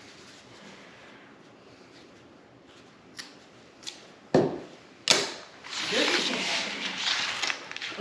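Kitchen scissors cutting string: a few small clicks, then two sharp knocks about halfway through, followed by plastic wrap crinkling as it is handled for the last couple of seconds.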